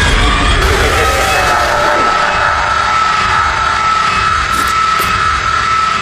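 Loud horror-film sound effect: a dense rushing noise with a high, steady whine through it, starting suddenly as the ghostly figure appears.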